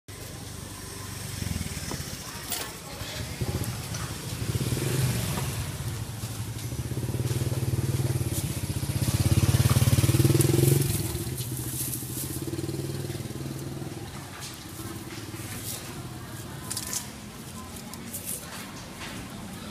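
Street noise with a motorcycle engine running close by, growing louder to a peak about halfway through and then fading away, with scattered small clicks and knocks.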